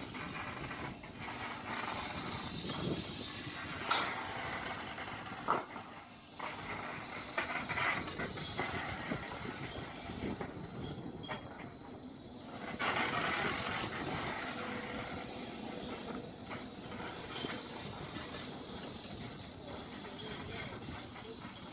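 Steel scaffolding of an outdoor stage being put together: a few sharp metal clicks and knocks, the loudest about four and five and a half seconds in, over steady outdoor background noise.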